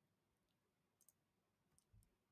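Near silence: a pause in the narration, with at most a few barely audible faint clicks.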